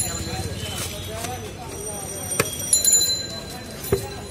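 Indistinct chatter around a roadside food stall, with a few sharp knocks. The last knock comes near the end, as a plastic jar of spiced black plums is tipped against a newspaper cone.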